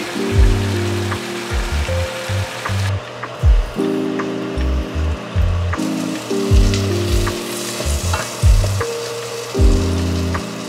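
Butter and flour sizzling in a stainless saucepan as a roux for béchamel sauce is stirred with a wooden spoon, over soft background music with a regular bass line. The sizzle drops out for a few seconds about three seconds in.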